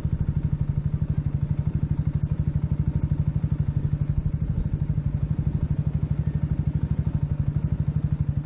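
Yamaha motorcycle engine idling while stopped, a steady, even pulsing beat at a constant pitch.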